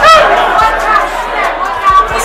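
Loud voices shouting and chattering close to the microphone, with the hubbub of a crowded room behind.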